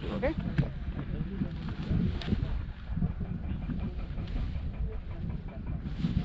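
Wind buffeting the handheld camera's microphone: a low, uneven rumble that rises and falls without a pattern.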